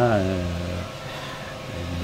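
A man's voice ends on a drawn-out syllable, then a pause filled only by a steady low background hum.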